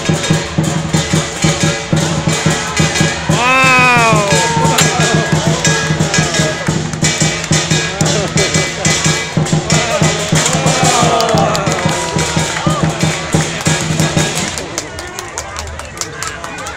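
Lion-dance percussion, a big drum with clashing cymbals and a gong, beating a fast, steady rhythm to accompany lions on high poles. A voice calls out over it, rising and falling, about three seconds in and again around ten seconds. The beating stops shortly before the end.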